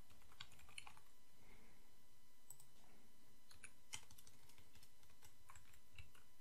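Faint computer keyboard typing: scattered keystrokes in a few short runs with pauses between.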